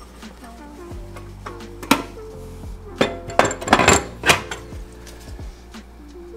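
Metal clinks and knocks, the loudest in a cluster from about three to four and a half seconds in, as the sheet-metal cover plate is set back over the burner of a kerosene-fired Aga cast iron cooker. Soft background music plays underneath.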